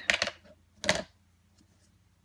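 Plastic case of a Memento ink pad being handled and opened on a desk: a quick cluster of clicks right at the start, then a single sharp click about a second in.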